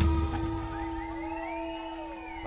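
Live band playing a quiet instrumental passage: one steady held note under higher notes that slide up and down in pitch, the drums dropping out about half a second in and the music growing steadily quieter.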